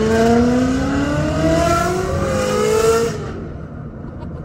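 Ferrari 360 Modena's V8 at full throttle, heard from inside the cabin: the engine note climbs steadily in pitch as it revs up toward about 6,000 rpm, then the throttle is lifted about three seconds in and the sound falls away.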